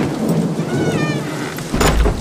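Steady heavy rain, with a sharp thunderclap near the end that trails into a low rumble.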